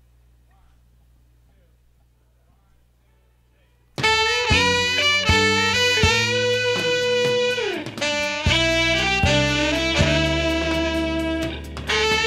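A few seconds of faint low hum, then a live jazz-funk band starts abruptly about four seconds in and plays loudly, with electric guitar, saxophone, bass, drums and keyboards.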